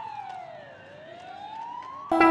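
A siren wailing, faint, its pitch sliding slowly down and then rising again about halfway through.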